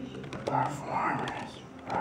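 Indistinct voice from an FM radio broadcast.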